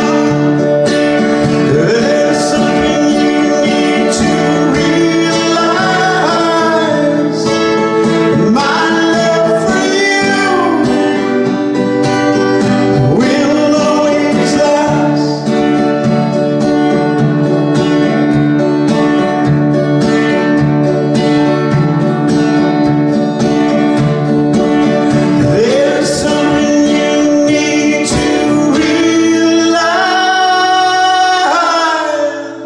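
A male singer-songwriter singing while strumming a steady rhythm on a capoed acoustic guitar. His voice slides between notes in several places.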